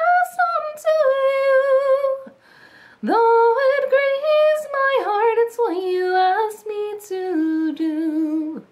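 A woman singing a slow Christian worship song alone, with no accompaniment, holding notes with vibrato. She breaks for a breath a little over two seconds in, then sings the next line.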